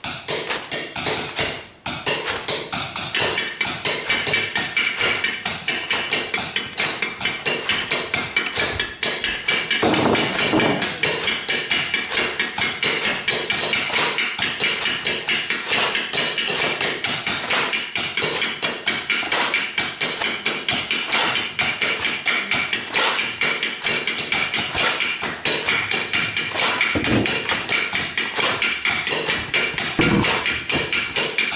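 Found-object percussion played by a small group: sticks tapping quickly on plastic tubes, with paper rustling, making a dense, continuous clatter of many light taps a second.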